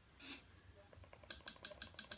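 A quick run of about seven faint, evenly spaced clicks, roughly ten a second, near the end, as the Kodi menu on a Fire TV Stick is scrolled through. There is a brief soft hiss about a quarter second in.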